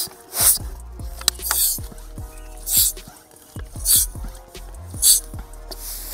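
Air pump strokes forcing air through a hose and bicycle valve into a plastic bottle rocket, a short hiss about every second and a bit, over steady background music.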